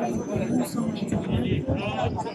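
People talking: voices over a crowd, without clear words.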